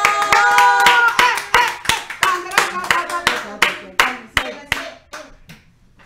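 Two people clapping their hands amid laughter. The claps come about four a second, then thin out and fade away after a few seconds.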